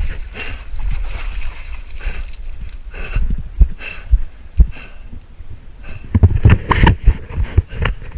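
Water sloshing and splashing, with wind buffeting the microphone, then a run of loud knocks and thumps in the last two seconds.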